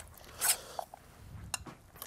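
A metal spoon in a stainless steel bowl of moist filling: a short scrape about half a second in, then a sharp click about a second and a half in.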